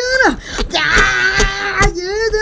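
A squeezed yellow rubber squeeze toy letting out a long, wailing squeal that holds one steady pitch for about a second, with a few sharp clicks from the toy being handled.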